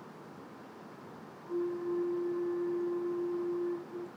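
A single steady, mid-pitched musical note held for about two seconds, starting about one and a half seconds in, then a brief repeat of the same pitch: a starting pitch given before an unaccompanied sung antiphon. Faint room hiss before it.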